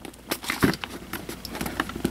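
Cardboard and paper packaging being handled: an irregular run of light clicks, taps and rustles as a box flap is opened and a paper insert is slid out.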